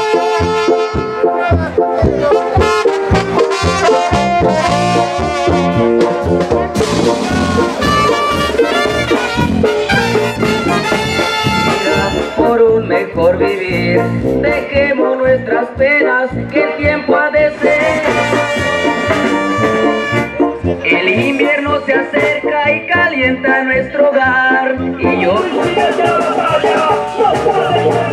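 Brass band music, trumpets and trombones playing a lively tune over a steady beat of bass and drums.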